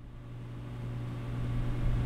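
A steady low electrical hum with hiss, fading in and growing louder: the background noise of a recording.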